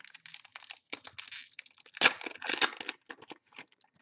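A foil trading-card pack being torn open and crinkled in the hands: a run of crackling rustles, loudest about two seconds in, thinning to a few light clicks and rustles near the end.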